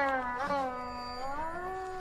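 Carnatic veena note bending in pitch: after a pluck about half a second in, it sags and then slides up in a long gamaka ornament.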